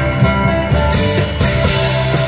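Live band playing an instrumental passage with guitar and drum kit. About a second in, the sound gets brighter as cymbals come in.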